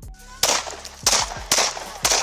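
A police officer's gun fired three times in quick succession, shots about half a second apart.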